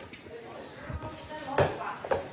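Faint talking in a room, with one sharp knock about one and a half seconds in.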